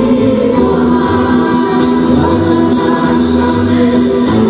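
Live rebetiko music: several voices singing together over bouzouki, acoustic guitar and a double bass playing a steady pulsing bass line.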